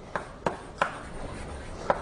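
Chalk writing on a blackboard: four sharp chalk taps with light scratching between them as letters are stroked on.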